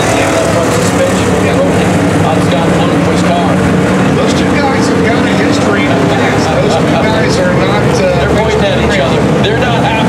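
Several dirt late model race cars' V8 engines running as the cars go around the dirt track, a loud, steady engine noise whose pitch wavers up and down, with indistinct voices mixed in.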